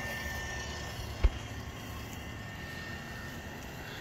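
Linear actuator motor of a dual-axis solar tracker running steadily as it drives the panel frame all the way out into its timed park position, with a single sharp knock about a second in.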